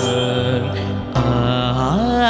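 A male singer holding two long, steady notes over a karaoke backing track in a Carnatic-flavoured Tamil song, with a short break about a second in.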